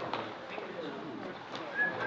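Faint, indistinct voices murmuring.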